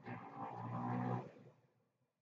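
A man's drawn-out wordless groan, low and steady in pitch, dying away about one and a half seconds in.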